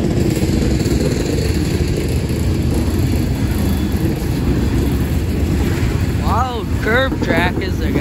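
Loaded coal cars rolling slowly past on the rails: a steady, dense rumble with the rattling clatter of steel wheels and car bodies.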